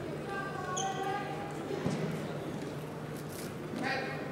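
Sports hall background: distant voices talking, with a single thump about two seconds in, over a steady low hum.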